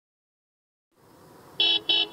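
Faint traffic noise fading in, then two short car horn honks near the end.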